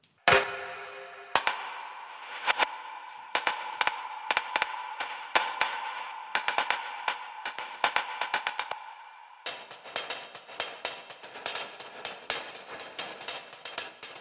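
Percussion samples from Output Arcade's Extra Percs kit (Workshop Perc), played from the keyboard. Scattered clicks and knocks sound over a held ringing tone, then about two-thirds of the way in they give way to a denser run of rapid clicks.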